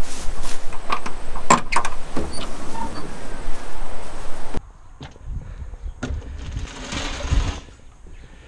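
Metal door latch on a truck's box body being flicked off and the door handled: a few sharp clicks and knocks over a steady rushing noise. About halfway through the sound drops to a quieter low rumble with scattered knocks.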